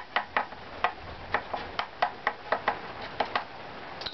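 A thin stick taps quickly along one strip of a violin back plate, about four light knocks a second, each with a short woody ring. This is tap-tone testing of the strip's graduation, listening for high and low spots. The maker hears a little hole in the sound at one spot.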